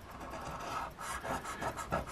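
An old copper penny scraping the coating off a lottery scratch-off ticket: a steady rasping rub with a short break about a second in.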